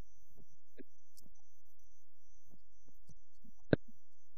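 A steady low hum with scattered faint thumps, and one sharp click near the end.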